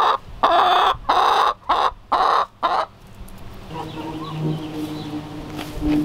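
Hens clucking close to the microphone as they feed, a run of about six loud clucks in the first three seconds. Then it goes quieter, with a low steady hum joining about four seconds in.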